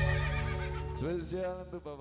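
Live band music fading out, with a wavering pitched sound that quavers up and down from about a second in as the music dies away.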